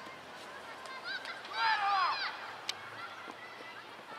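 Children's high-pitched shouts and calls during a youth football match. The loudest is a long call about two seconds in, and a short sharp knock follows soon after.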